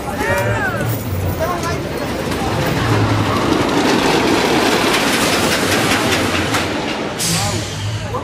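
A loud rushing noise, dotted with faint clicks, then a sudden sharp hiss of air about seven seconds in. Voices are heard at the start.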